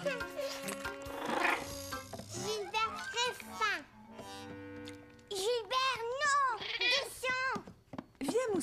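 Cartoon soundtrack: light background music with several short wordless vocal sounds that rise and fall in pitch, in two spells.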